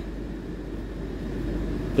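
Air conditioner running with a steady low hum, with a constant electrical mains hum beneath it.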